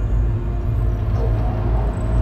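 A low, steady rumbling drone with no speech.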